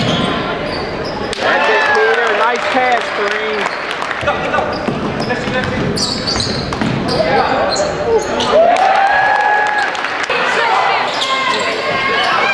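Basketball game sounds in a gym: the ball bouncing on the hardwood floor, with sneakers squeaking and the voices of players and spectators echoing around the hall.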